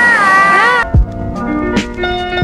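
A young child's high-pitched, drawn-out call with a wavering pitch over a background hiss of crowd and traffic, cut off abruptly under a second in. Background music with steady notes and drum hits follows.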